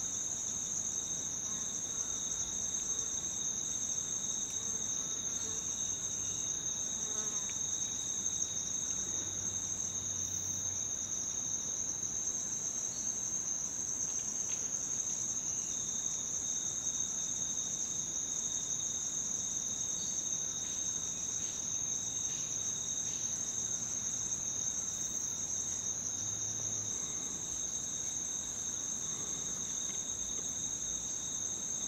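Insects calling in a steady, high-pitched chorus at two pitches, the higher one louder.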